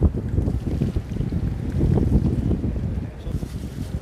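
Wind buffeting the microphone, an uneven low rumble, over faint wet sloshing as water is pressed out of a waterlogged backpack pulled from a canal.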